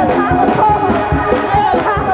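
Live gospel music: a woman soloist sings into a microphone, her voice bending through a melodic run, backed by a choir and a band keeping a steady beat.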